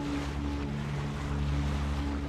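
Bow wave rushing and splashing along the hull of a boat under way, over a steady low hum.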